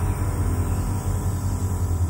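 Steady low hum with an even background hiss.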